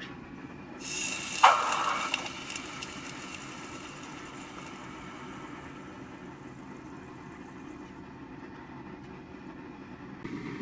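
Red-hot Nitro-V stainless steel bar plunged into water for a quench at its non-magnetic point: a sharp sizzling hiss starts about a second in, peaks briefly, then dies away over the next couple of seconds as the steel cools.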